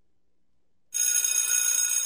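Near silence for about the first second, then a bell starts ringing suddenly and keeps on steadily, bright and high-pitched, as a sound effect opening a radio commercial.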